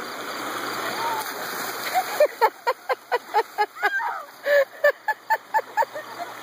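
Ice water dumped from buckets splashing down over a person standing in a creek. About two seconds in, a woman breaks into a rapid run of short cries from the cold, about four a second.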